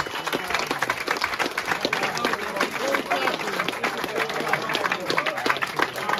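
A small audience applauding: many irregular hand claps throughout, with voices talking underneath.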